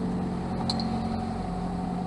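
Steady rush of water streaming past a sailing yacht's hull, with a low, even hum underneath.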